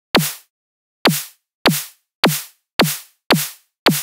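Synthesized snare from the Vital soft synth struck seven times, about two hits a second: each hit is a sine-wave punch that drops quickly in pitch, under a short burst of high-passed white noise. It is an unfinished snare, with only its punch and noise layers in place.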